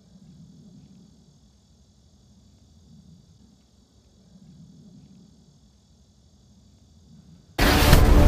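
Faint, low outdoor background rumble that swells and fades slowly. About seven and a half seconds in, loud music cuts in abruptly.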